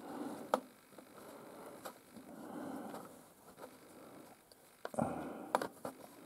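Faint scraping and a few light, sharp clicks as a screwdriver turns a bolt into the threaded mounting of a radio chassis component, the bolt taking up its thread.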